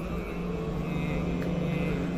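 A low, steady droning hum with fainter higher overtones: the sustained background drone laid under a recited Arabic supplication.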